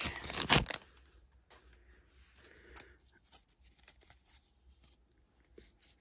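Foil booster-pack wrapper of Pokémon trading cards crinkling and tearing loudly for under a second as it is pulled open, then faint rustles and light clicks of the cards being slid out and handled.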